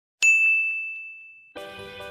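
A single bright ding chime, struck once and ringing away over about a second. Music with held notes comes in about one and a half seconds in.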